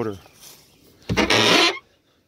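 A man coughing once, a harsh rasp about half a second long, about a second in; it cuts off suddenly.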